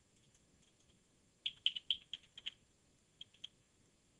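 Faint keystrokes on a computer keyboard, typing a money amount into a form field. A quick run of taps comes around the middle, and a few more come near the end.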